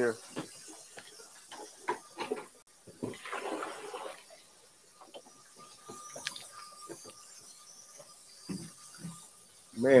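Kitchen handling noises: scattered light knocks and clicks of things being moved and set down, with a short rustling hiss about three seconds in and a faint steady tone for a few seconds in the second half.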